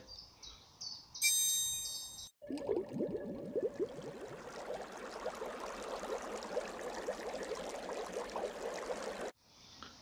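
An added sound effect: a short bright chime about a second in, then a steady bubbling water sound that runs until it cuts off suddenly near the end. Faint running stream water follows.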